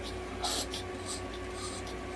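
A Chihuahua panting quickly, short breathy puffs about two or three a second, over the steady low hum of the nebulizer/oxygen equipment running.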